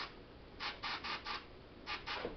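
Paasche H airbrush at about 40 psi giving short test bursts of spray while being set to a medium spray: four quick hisses about half a second in, then one more near the end.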